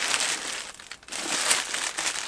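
Clear plastic packaging bag crinkling as it is handled and pulled open, easing off briefly about a second in.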